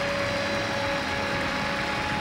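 Studio audience noise: a steady wash of applause and cheering, with a long held high tone running through it.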